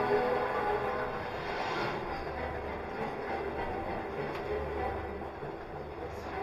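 Hogwarts Express ride train running: a steady low rumble heard inside the enclosed compartment. Soundtrack music fades out over the first second or two.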